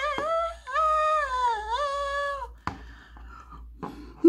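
A person humming a tune in a high-pitched voice, a few held notes that slide up and down, stopping about two and a half seconds in. A sharp click follows, then faint rustling.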